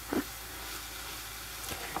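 Mushrooms and rice frying in a pan, a steady sizzle, with a wooden spatula stirring them. A small click or scrape comes just after the start.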